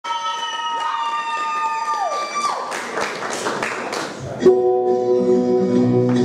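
Recorded music played over a hall's sound system: held notes glide down in pitch and die away about two and a half seconds in, followed by a short noisy stretch, then a guitar-led backing track starts abruptly about four and a half seconds in.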